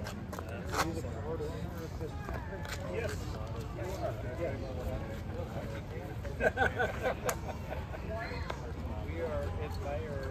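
Background chatter of people talking nearby outdoors, over a steady low rumble, with a few sharp knocks or clicks about two-thirds of the way through.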